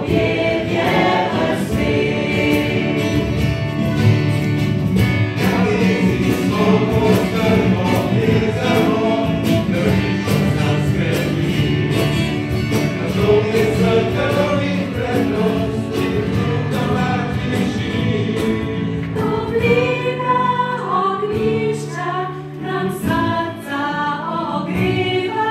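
A group of voices singing a song together, choir-style, thinning out a little near the end.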